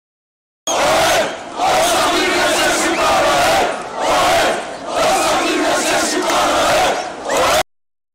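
A crowd of students chanting the slogan 'Bashkim kombëtar' ('national unification') in unison, loud and repeated over and over with short breaks between repeats. It starts about half a second in and cuts off abruptly just before the end.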